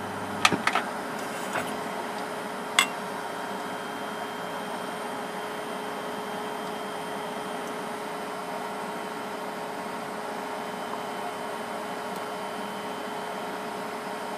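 A switch clicks a few times about half a second in as the room light is turned off, and a low mains hum stops with it. A steady electrical hum with a few faint high whining tones carries on, with one more sharp click a few seconds in.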